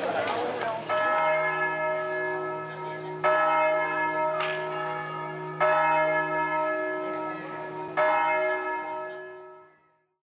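A church bell struck four times, roughly two and a half seconds apart, each stroke ringing on with several tones and dying away slowly; the ringing fades out near the end.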